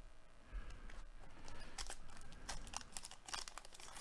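Paper-and-foil wrapper of a Baseball Treasure coin pack being torn open and crinkled by hand: a run of faint crackles and tearing sounds starting about half a second in.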